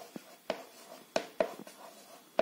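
Chalk writing numbers on a board: a few short, sharp taps and scratches as each stroke of the digits goes down.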